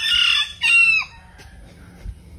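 A rooster crowing, the call ending on a falling note about a second in.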